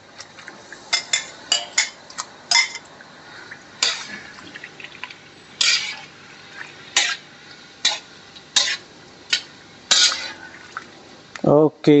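Wire strainer clinking and scraping against a ceramic bowl and wok as squid slices are pushed into boiling water: about a dozen short, sharp clinks at irregular intervals. Underneath is the low, steady bubbling of the boiling blanching water.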